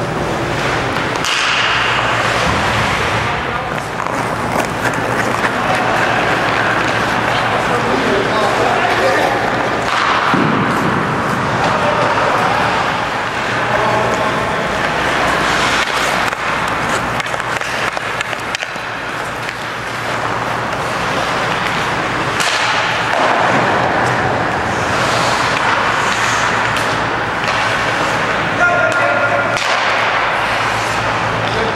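Ice hockey on an indoor rink: skate blades scraping and carving the ice, with sharp clacks of sticks and puck throughout, over a steady low hum.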